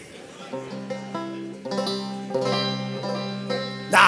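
Banjo strings plucked, a few single notes ringing on one after another, starting about half a second in.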